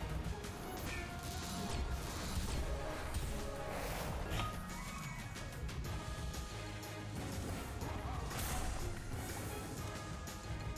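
Online slot game audio at low level: background music with short clattering hits and chimes as symbols drop and reels spin.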